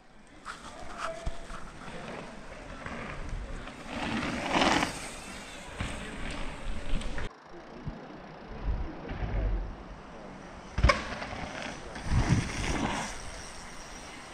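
Mountain bikes riding a dirt jump line: tyres rolling and scrubbing over packed dirt in passes lasting a second or two, with a sharp knock about eleven seconds in.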